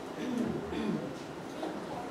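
A child's voice faintly speaking a short line from a distance, in soft gliding tones.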